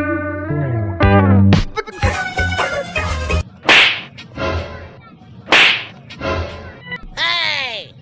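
Edited comedy sound effects: a music sting that ends in a falling slide, then a string of whip-crack swishes, the two loudest about two seconds apart, and a falling cartoon-like tone near the end.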